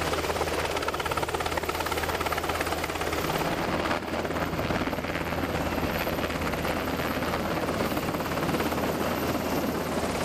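Navy MH-60 Seahawk helicopter hovering close by, its main rotor beating rapidly and steadily over the engine noise, with a brief dip in level about four seconds in.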